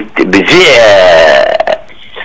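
A man's voice over a telephone line, drawing out a long hesitation sound, like 'ehh', for about a second between words.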